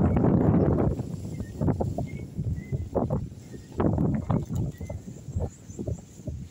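Footsteps crunching on gravel, a handful of separate scuffing steps, after a second of loud rumbling noise on the microphone.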